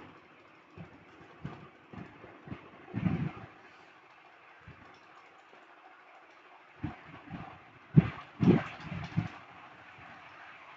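Scattered light taps and clicks of hands handling TO-220 MOSFET transistors, the soldering iron and the circuit board on a workbench, over a faint steady hiss. The taps are irregular through the first half, and a cluster of louder knocks comes near the end.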